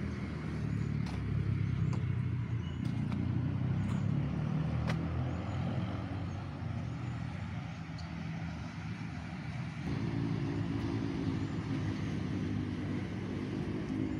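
Steady low rumble of a motor vehicle engine that changes in pitch about ten seconds in.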